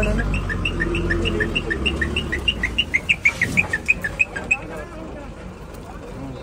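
A bird chirping in a fast, even run, its short notes alternating between two pitches about four or five times a second, fading out after about four and a half seconds. A low rumble runs underneath during the first half.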